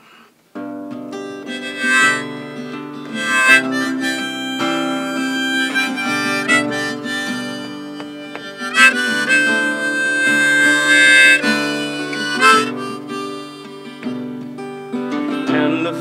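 Harmonica in a neck holder played over acoustic guitar: the instrumental intro of a folk song, starting about half a second in, with one long held harmonica note near the middle.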